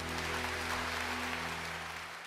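Audience applause breaks out over the orchestra's final held chord, and the low notes fade out near the end.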